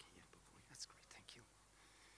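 Near silence with faint whispering, fading out after about a second and a half.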